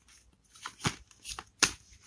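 A deck of tarot cards being shuffled by hand: a few short, sharp card slaps and flicks, the loudest about one and a half seconds in.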